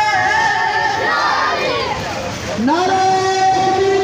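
A crowd of marchers chanting protest slogans, voices holding long drawn-out notes, the longest in the second half.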